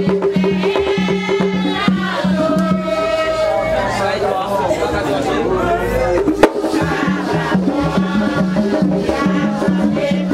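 Haitian Vodou ceremonial music: a steady drum rhythm with group singing. The drum pattern drops back for a few seconds while the singing carries on, then a sharp knock comes about six and a half seconds in and the rhythm resumes.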